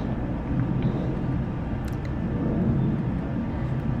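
Steady low background rumble, with one faint click about two seconds in.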